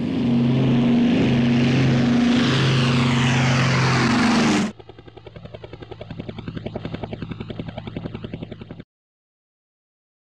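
Helicopter sound: a loud, steady engine hum with rushing noise that cuts off suddenly about four and a half seconds in. A quieter rotor chop follows, pulsing several times a second, and it stops abruptly a second before the end.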